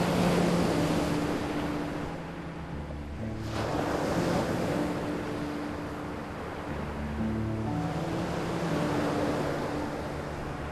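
Sea waves surging up a beach and washing back, swelling about every three seconds, under soft music of long held notes.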